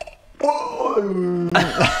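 Speech: a man's voice talking in a drawn-out way, with the sound growing busier near the end.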